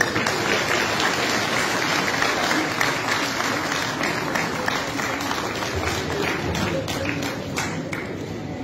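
Audience applauding, a steady dense patter of clapping with voices underneath that eases a little near the end.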